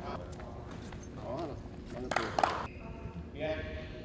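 Indistinct voices of people talking on an indoor court, with a cluster of sharp clicks and knocks about two seconds in that is the loudest moment.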